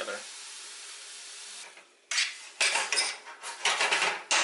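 A metal spoon stirring and scraping chopped pineapple and sorrel in a stainless steel sauté pan, a run of sharp clinks and scrapes starting about halfway through. Before that there is a steady low hiss.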